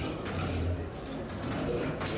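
Hall background noise: a low hum that comes and goes, with a faint murmur of voices.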